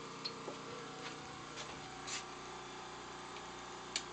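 Quiet room tone with a faint steady electrical hum, broken by a few soft ticks and a sharper click near the end.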